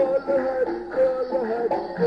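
Devotional sankeertan (Hindu chant) music: a sung melody that glides and wavers from note to note, with accompaniment.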